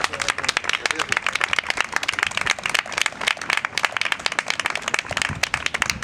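A crowd applauding: many hands clapping in a dense, fast patter.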